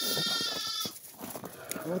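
A young animal of the sheep-and-goat flock bleating once, a high, slightly quavering call that ends about a second in.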